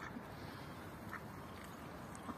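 Mallard ducks quacking, a few short faint quacks over a steady outdoor background hiss.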